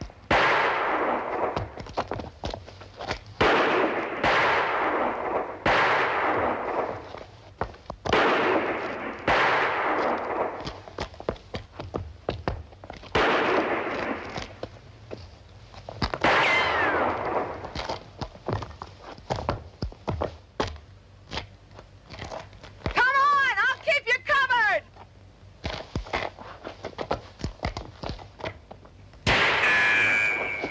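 Film gunfight among rocks: about a dozen single gunshots at irregular intervals, each with a long echoing decay, one followed by a thin falling whine like a ricochet. Past the middle comes a wavering pitched sound about two seconds long, and near the end another pitched sound that glides.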